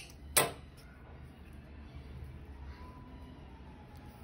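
Small scissors snipping through cotton crochet yarn: a sharp snip near the start.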